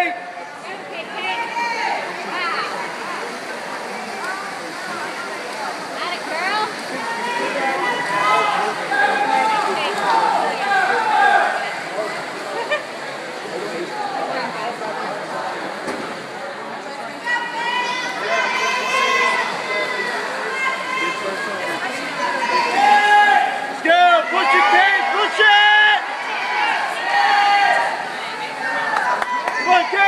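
Swim-meet spectators shouting and cheering during a backstroke race: many overlapping voices over a steady crowd din, with louder, more distinct shouts from a little past halfway on.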